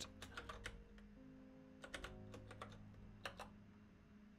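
Typing on a computer keyboard: a few short runs of quick key clicks, the first right at the start, another around two seconds in and a last one a little after three seconds. Faint background music runs underneath.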